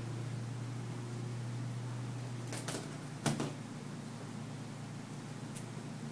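A steady low hum with three or so sharp clicks around the middle, from handling the cardboard box and cutting tool.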